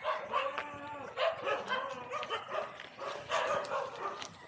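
Dog barking in repeated bouts, loudest near the start, about a second in and about three seconds in.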